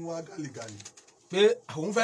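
A man speaking in Yoruba, with a short pause about a second in before the voice comes back louder.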